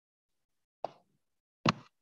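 Two short, sharp clicks about a second apart, the second louder, with dead silence around them.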